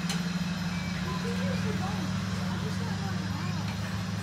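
Steady low engine drone from a biplane flight simulator's sound effects, with faint voices talking over it from about a second in.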